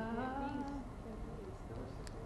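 A person's brief, faint hum, a closed-mouth 'mm' in a higher voice than the presenter's, dying away within the first second.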